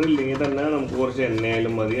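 A person speaking; no other sound stands out.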